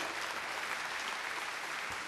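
Concert audience applauding steadily at the end of a song.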